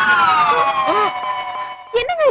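A long, high, siren-like tone that glides up and then falls slowly and steadily for about three seconds, stopping near the end: a comic sound effect stinging a shocked reaction. Short voice sounds are heard faintly beneath it.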